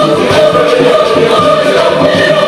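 Large choir of many voices singing together, holding long sung notes.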